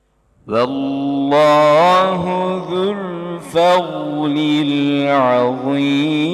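A man's voice reciting the Quran in the melodic tajweed style, drawing out long sustained notes with a wavering, ornamented pitch. It begins about half a second in, after a brief silence.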